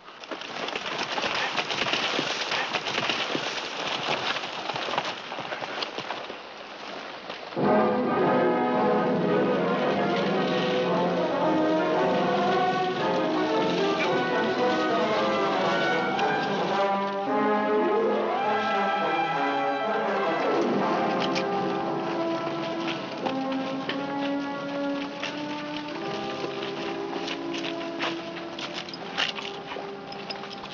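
Dramatic orchestral score led by brass and horns, starting suddenly about seven and a half seconds in and playing on with held chords. Before it comes a dense, noisy clatter.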